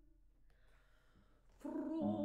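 A pause in an operatic aria: near silence with only faint room noise for about a second and a half, then soprano voice and piano come back in loudly near the end.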